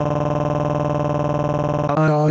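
A text-to-speech voice doing a synthetic crying wail: one long vowel held at a flat, unchanging pitch.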